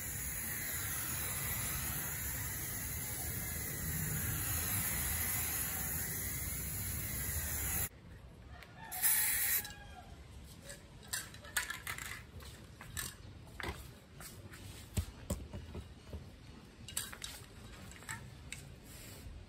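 Aerosol spray can of grey primer hissing steadily as it sprays, cutting off suddenly about eight seconds in. After that come quieter scattered clicks and taps, with one short, louder burst about a second after the cut.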